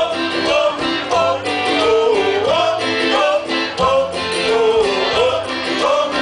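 A male singer singing a gliding melody over a live band, with guitar prominent, amplified through the stage sound system.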